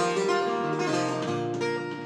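Acoustic guitar being played, sustained chords ringing on with no voice over them.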